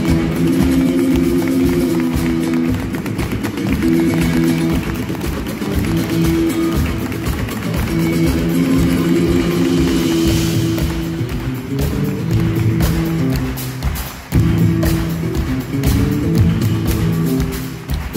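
Live rumba flamenco band playing: a nylon-string guitar over drums and percussion with a steady driving beat. The music drops briefly about two-thirds of the way through, then the full band comes straight back in.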